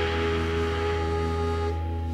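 Live rock band music: a held, sustained chord ringing on, without drum strikes. About three-quarters of the way through, the brighter upper part cuts off while the lower notes keep sounding.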